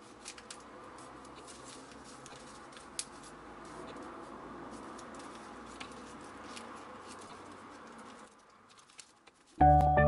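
Faint rustling and soft creasing of origami paper being folded by hand, with a few small clicks. It drops away, and shortly before the end loud background music with held notes starts.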